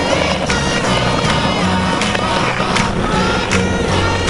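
Background music with a steady bass beat, over a skateboard rolling on pavement with a few sharp pops and clacks of the board during a trick.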